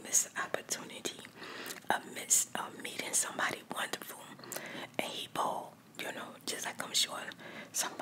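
A woman whispering close to the microphone, with sharp hissing 's' sounds standing out.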